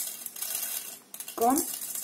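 Small decorative stones rattling and scraping as hands sweep and gather them across a cutting mat, for about the first second.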